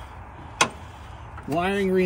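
A single sharp click about half a second in, from a wrench being worked on the car battery's terminal bolt, then a man starts speaking.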